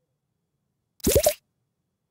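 A short cartoon 'bloop' sound effect about a second in, sweeping quickly upward in pitch, with silence around it.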